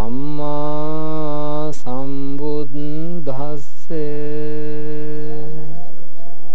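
A man's voice chanting Buddhist Pali verses in slow, long-held notes that glide between pitches, with short breaths between phrases. It is the drawn-out devotional chanting that opens a Sri Lankan Buddhist sermon.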